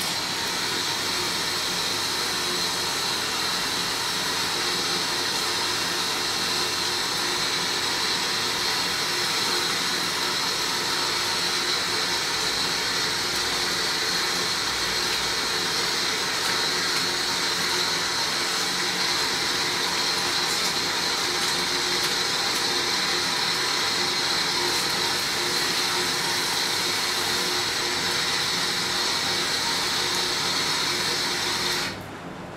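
Water running steadily from a salon shampoo basin's faucet, rinsing shampoo out of hair and splashing into the basin.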